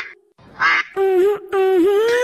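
Pitched, voice-like calls: a short harsh one about half a second in, then held notes with a dip in pitch near the end.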